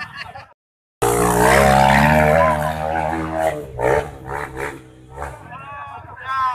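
Dirt bike engine revved hard and held from about a second in, after a brief dropout of sound, easing off after a couple of seconds; voices shout over it.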